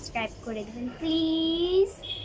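A young girl's voice: a few short syllables, then one long held sung note that rises slightly at its end.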